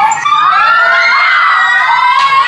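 Several young women squealing and screaming excitedly together in greeting: long, overlapping high-pitched cries that rise and fall.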